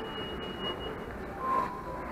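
Shopping-mall concourse ambience: a steady low background hum of the hall, with a thin high tone held through the first second and a short, lower tone about one and a half seconds in.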